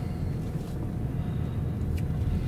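Steady low engine and road noise of a car driving slowly, heard from inside the cabin.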